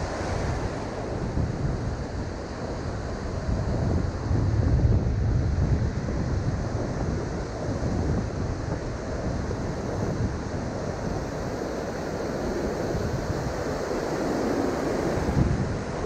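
Ocean surf breaking and washing up the beach, with wind rumbling on the microphone. The level swells about five seconds in.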